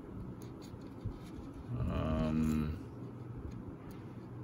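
A man's drawn-out wordless hum or groan, about a second long and starting about two seconds in. Under it are faint rustles and ticks of masking tape being picked and peeled off a plastic model hull.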